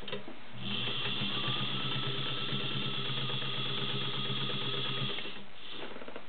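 Vintage White model 265 sewing machine's 1.3-amp motor running steadily while stitching through six layers of denim, a hum and high whine with rapid needle strokes. It starts about half a second in and stops near the end.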